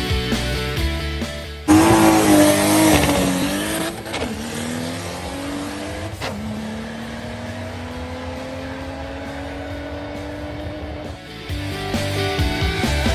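A car launching hard and accelerating down a drag strip, starting suddenly and loud about two seconds in. The engine pitch climbs, drops at two gear shifts, then rises steadily as the car pulls away, with music before the launch and again at the end.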